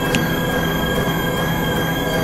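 Dense experimental electronic noise drone: two steady high-pitched whining tones held over a thick, noisy low hum. A single sharp click comes just after the start.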